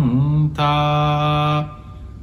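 A man's voice in Buddhist chanting: a short sliding phrase, then one long held note that dies away near the end.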